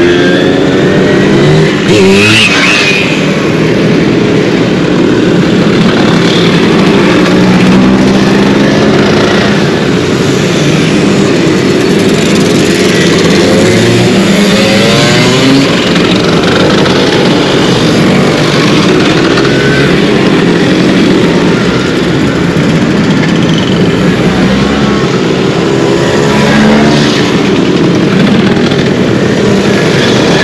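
A long column of Vespa scooters and Simson mopeds riding past close by, one after another. Their small engines, many of them two-strokes, run and rev in a loud, continuous overlapping drone, each engine note rising and falling as it goes by.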